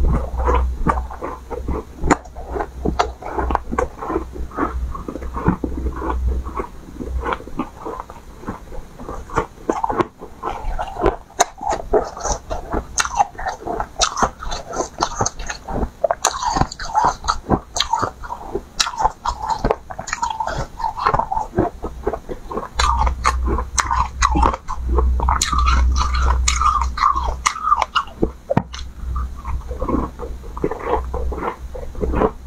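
Close-miked biting and chewing of frozen ice blocks: a dense, irregular run of crunches and crackles from the mouth throughout. A low rumble sits under it in the first few seconds and again near the end.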